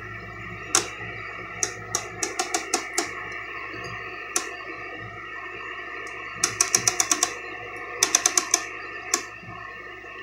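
Rotary VHF channel selector of a 1980s Daytron DT-505 portable TV clicking through its detents, a few scattered clicks at first and then quick runs of several. Underneath runs a steady hiss and hum of static from the set's speaker, with no station tuned in.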